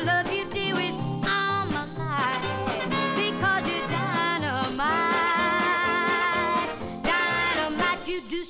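A young girl singing a lively swing-style rock-and-roll number over a band's steady beat. She holds a long note with vibrato in the second half, then a shorter one near the end.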